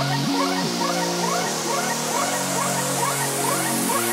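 Electronic techno music: held synth notes that slide up in pitch about a quarter of a second in and again at the end, under a short rising synth blip repeating about twice a second.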